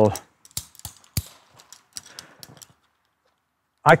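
Carabiners and metal hardware on a rope access harness clicking and clinking as they are handled. A few separate sharp clicks come in the first couple of seconds, the strongest about a second in.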